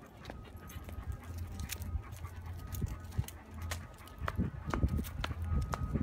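Two small dogs walking on leashes over asphalt: scattered light clicks and taps of claws and jingling collar tags, with footsteps, over a steady low rumble on the phone's microphone.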